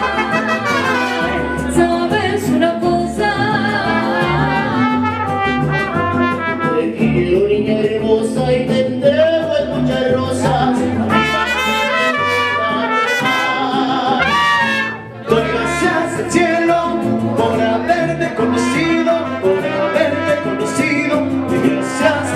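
Live mariachi band playing and singing: trumpets and a strummed vihuela behind a male lead singer on a microphone. There is a brief break in the music about fifteen seconds in.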